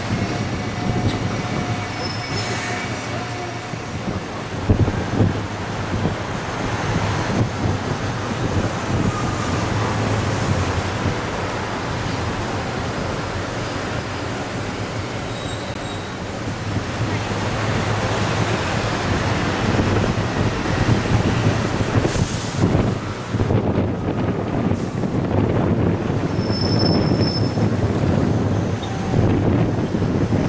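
Moving tour bus in city traffic, heard from its upper deck: the bus engine runs with a steady low hum under continuous road and traffic noise, with a few brief high-pitched squeals.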